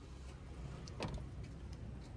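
An SUV's rear passenger door being pushed shut: a single soft knock about a second in, over a low steady background hum.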